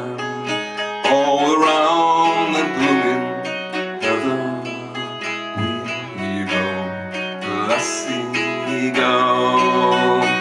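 Acoustic guitar strummed steadily in a slow folk-song accompaniment, with a man's singing voice joining in places.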